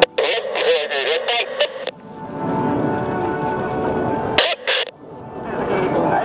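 Airshow public-address sound: a voice talking in the first two seconds and again near the end, with steady music between. No jet engine noise stands out.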